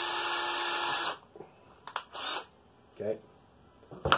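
Cordless drill with a number 36 bit running steadily at one pitch, drilling through the cup of a spent 209 shotgun primer, then stopping suddenly about a second in. A few faint clicks follow.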